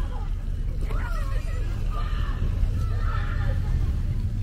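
Outdoor park ambience: scattered distant voices of people and children, with a few higher calls, over a steady low rumble.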